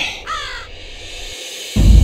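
A crow cawing, with short falling calls, then loud music coming in suddenly with deep bass near the end.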